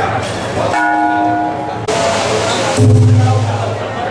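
A metal bell struck once, ringing with several steady tones for about a second before cutting off suddenly.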